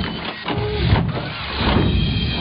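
Television channel ident between programmes: a dense run of electronic sound effects that leads into music near the end.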